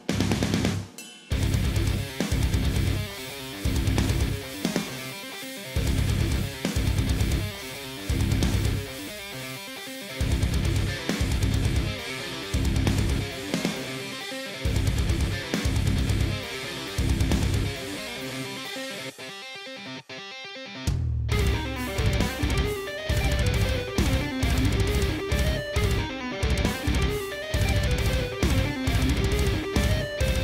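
Heavy metal song with distorted electric guitars playing stop-start chugging riffs, with a brief break about a second in. After a short pause near 20 s a denser, steadier riff takes over.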